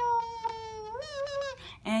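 Beatbox 'kazoo' sound: a high, buzzy hum made by the bottom lip vibrating against the teeth. Its pitch sags slowly, steps up about a second in, and it stops shortly before the end.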